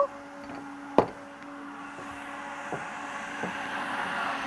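A single sharp knock about a second in, likely the glass oil bottle being set down on a shelf, over a faint steady hum. A soft hiss builds toward the end.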